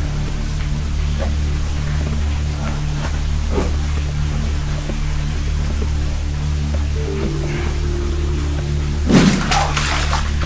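Background music with steady, held low bass notes, and a brief louder burst of sound near the end.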